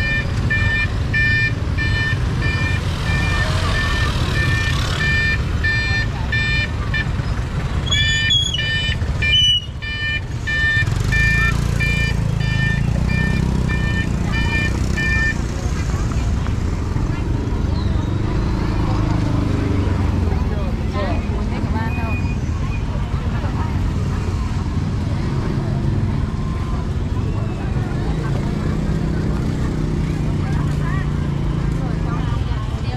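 Busy city street traffic, motorbike and vehicle engines running steadily, with a repeated electronic beeping at one pitch, a few beeps a second, that stops about fifteen seconds in.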